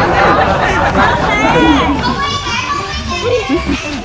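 Children's voices shouting and calling out during a game, with high-pitched excited calls through the middle.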